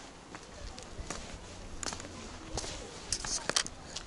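Footsteps on a sandy stone path, a scatter of short scuffs and clicks, louder and closer together about three seconds in, with faint voices in the background.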